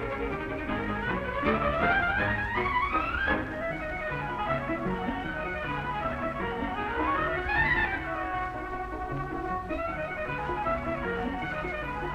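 Orchestral music from an old documentary film's soundtrack, strings prominent, with two quick rising runs up the scale.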